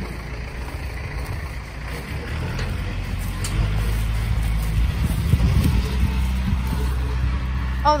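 A side-by-side utility vehicle's engine running as a low, steady drone that grows louder about three seconds in.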